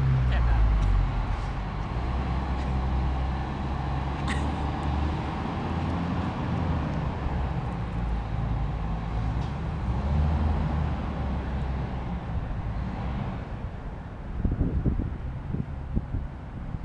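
Car traffic driving through a road underpass: a steady low rumble of engines and tyres. A few low knocks come near the end.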